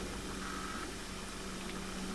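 Quiet room tone: a steady low hum over faint hiss, with no distinct events.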